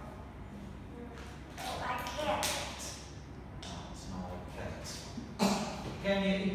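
Soft, halting speech in a room, with a sharp tap about five and a half seconds in.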